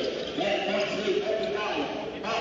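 A basketball dribbled on a hardwood-style court, bouncing under a man's voice talking over the play.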